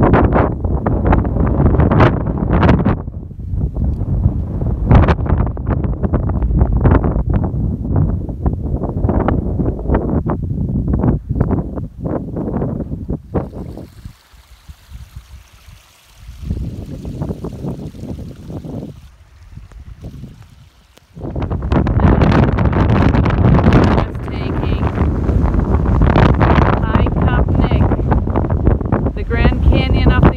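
Strong wind buffeting the phone microphone in irregular gusts, dropping to a quieter lull about halfway through before gusting hard again.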